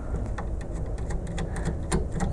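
A Phillips screwdriver turning a screw out of a plastic printer mount: a few faint, scattered clicks of the bit in the screw head over a low steady hum.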